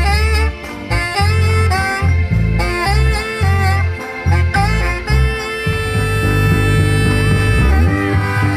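Saxophone playing a solo melody with bends and slides over a big band's low, rhythmic accompaniment. It ends on one long held note from about six seconds in.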